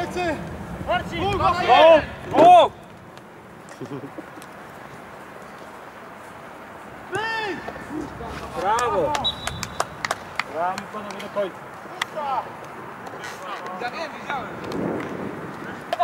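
Men shouting and calling to each other across an outdoor football pitch, loudest in the first three seconds and again about eight to ten seconds in. Scattered short knocks sound under the voices, with a sharp one about twelve seconds in.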